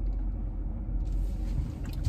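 Steady low rumble of a car driving, engine and road noise heard from inside the cabin.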